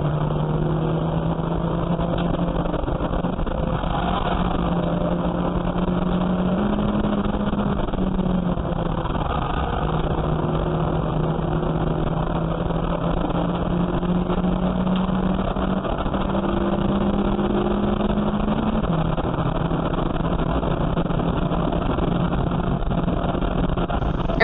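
Saloon race car's engine running hard at steady high revs, heard inside the cabin, with road and tyre noise. Its note steps up and down in pitch a few times as the car goes through corners.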